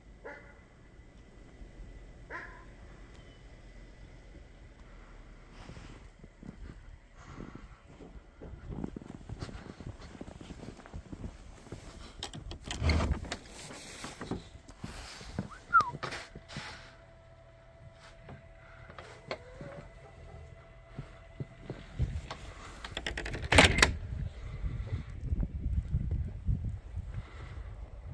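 Irregular knocks, rattles and clatter from a wooden shed door and a wire-mesh gate being handled among footsteps in snow. The loudest knocks come about halfway through and again shortly before the end.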